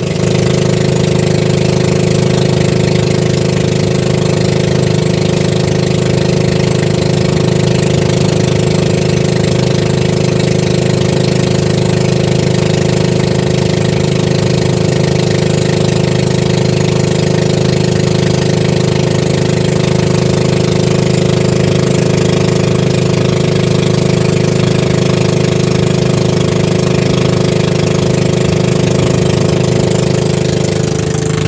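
Engine of a motorized outrigger fishing boat running steadily under way, loud and even throughout.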